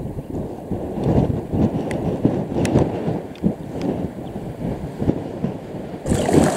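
Strong wind buffeting the microphone: a loud, gusty low rumble.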